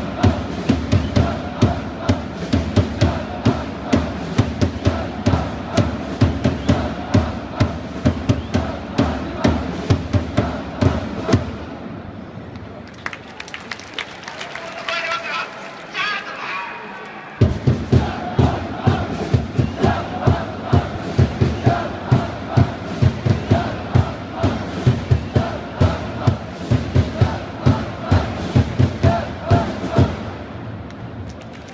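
Baseball cheering section chanting "Chad Huffman!" over and over in unison to a steady cheering drum beat. About twelve seconds in, the chant and drum break off for several seconds, leaving only a quieter crowd. Then the chant starts up again at full volume.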